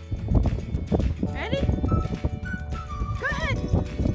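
Dogs barking and yelping in play, several short sharp barks in the first second, then two higher arching yelps, over background music with a whistled-sounding tune.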